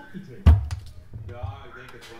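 A single sharp thump about half a second in, with a short low rumble after it, followed by faint speech.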